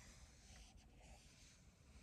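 Faint scratching of a felt-tip marker drawing a continuous line on paper.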